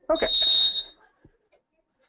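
One steady, high-pitched electronic beep lasting just under a second, from a Geo Knight heat press's timer, sounding as its set time runs out.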